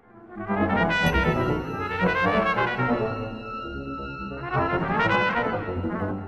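Trumpet improvising with an interactive computer system that extracts features from the trumpet's playing and answers it with its own computer-generated music. The music fades in at the start, with high sustained tones held for a few seconds over the trumpet.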